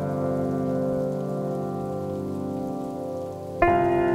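Solo piano: a held chord rings and slowly fades, then a new chord is struck about three and a half seconds in.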